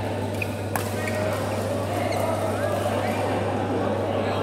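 Badminton hall ambience: overlapping voices of players chattering in the background over a steady low hum, with one sharp racket-on-shuttlecock hit about three-quarters of a second in and a few short high squeaks.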